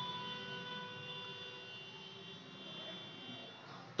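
Faint distant engine drone with several steady whining tones that fade out over a few seconds.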